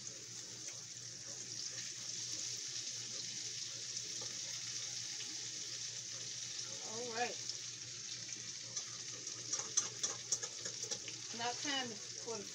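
Green tomato slices and catfish frying in hot grease in pans on the stove: a steady sizzle, with a few sharp clicks near the end.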